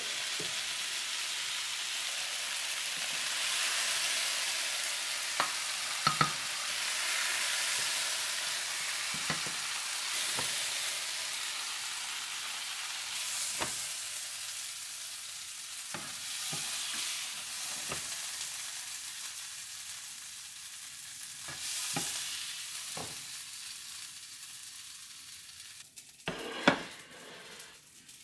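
Walleye fillet and asparagus stir fry sizzling in a nonstick frying pan just after the heat is turned off, the hiss slowly dying down as the pan cools and nearly gone near the end. A few sharp taps and clicks of the spatula against the pan are scattered through it.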